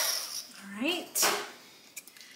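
Handheld heat embossing tool switched off, its blower noise dying away within about half a second, followed by a short rising hum of a voice and a brief breathy rush of air.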